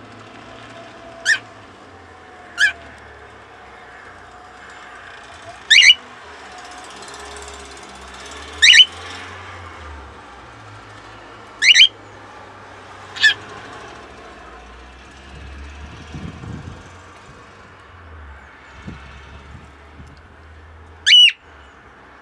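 Cockatiel giving short, sharp, loud chirping calls, seven in all, some as quick double notes, spaced one to several seconds apart, the last one near the end. A faint low hum runs underneath.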